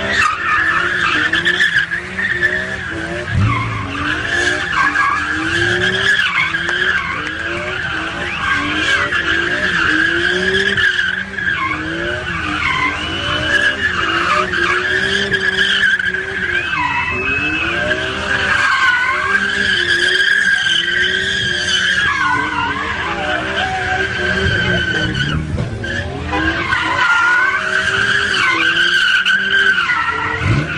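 A car doing donuts: the tyres squeal without a break while the engine is held at high revs, its pitch rising and falling about once a second as the car circles.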